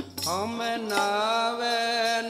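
Sikh keertan singing: a voice slides up into a long held, wavering note about a quarter second in.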